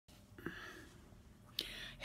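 Faint breath and mouth noises of a woman, then a short, louder intake of breath about a second and a half in.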